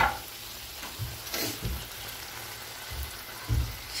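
Diced mutton frying in sheep's tail fat in a wide metal pan, a steady sizzle. A brief scrape about a second and a half in and a soft knock near the end.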